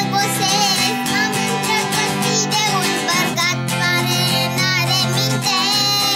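A young girl singing a Romanian folk-style song, holding long wavering notes, accompanied by a strummed twelve-string acoustic guitar.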